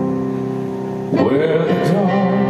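Live band music: a steady held instrumental chord, then about a second in a male singer comes in louder on a long note with a wavering pitch.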